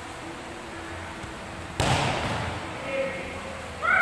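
A single loud smack of a volleyball being hit or landing, about two seconds in, with a short echo from the hall. Near the end a voice calls out.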